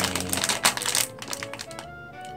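Foil blind-bag wrapper crinkling as it is squeezed and felt between the fingers, with quick crackles mostly in the first second or so, over background music.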